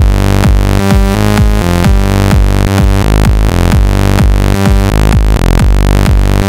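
Harmor software synth in FL Studio playing a looping electronic bassline. The phrase repeats about every two seconds, and some notes start with a quick downward pitch drop. The Harmonizer is set with low width and high strength, so the low-mid harmonics come through.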